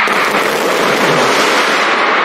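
Large audience cheering and screaming in a steady, loud wash of crowd noise.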